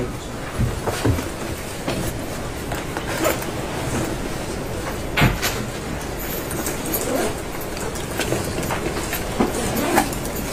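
Courtroom room noise from the microphones at the tables: a steady low rumble and hum, broken by scattered light knocks and paper rustles, the loudest about five seconds in.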